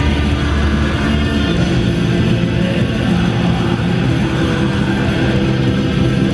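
A black metal band playing live, with heavy distorted electric guitars in a loud, dense, unbroken wall of sound, heard from the audience.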